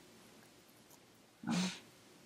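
Quiet room tone, then a short breathy "um" from a woman about one and a half seconds in.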